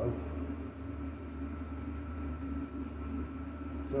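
Steady low machine hum with a faint, thin steady tone above it, unchanging throughout.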